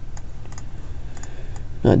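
A few faint, scattered clicks from working a computer's mouse and keys while a text box is being positioned, over a low steady hum; a voice begins right at the end.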